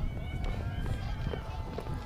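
Steady low rumble of open-air ambience picked up by the podium microphones, with faint distant voices from the crowd.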